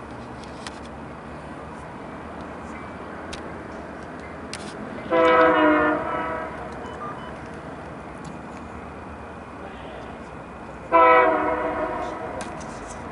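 Approaching Caltrain commuter train sounding its locomotive horn: two blasts of a multi-note chord, the first about a second long and the second starting near the end. Between them is the steady rumble of the oncoming train.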